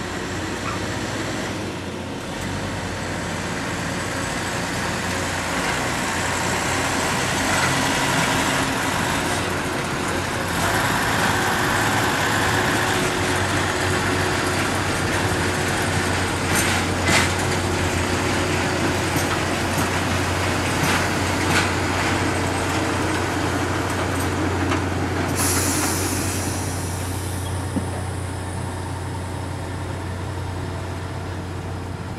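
Railway track maintenance machine running and moving slowly past along the track: a dense, steady mechanical noise over a low engine hum. It swells through the middle with a few sharp clicks, then eases off near the end as it moves away.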